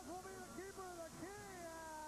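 A high-pitched human voice giving about three long, drawn-out shouts in a row, each rising and then falling in pitch.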